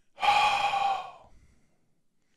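A man letting out one loud, exasperated breath through the mouth, about a second long.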